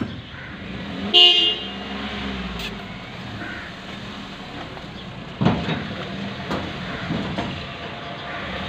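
A vehicle horn toots once, briefly, about a second in, over a steady hum of street traffic. A sudden thump follows a little past halfway.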